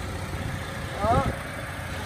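2009 Toyota Fortuner V's original petrol engine idling steadily, heard close up in the open engine bay.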